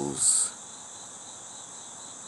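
Crickets chirring in a steady, high-pitched drone.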